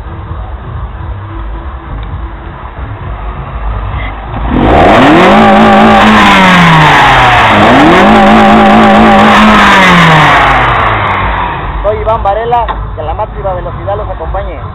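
Volkswagen DOHC 16-valve four-cylinder engine idling with a low rumble, then revved hard twice about four and a half seconds in. Each time the pitch rises quickly, holds high for a couple of seconds and falls back, and the revs are far louder than the idle.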